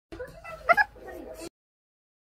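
A short high-pitched vocal sound, rising to a sharp loudest cry a little under a second in, and cut off at about a second and a half.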